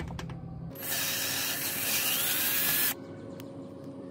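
A steady hiss about two seconds long that starts and stops abruptly, like gas or spray escaping under pressure.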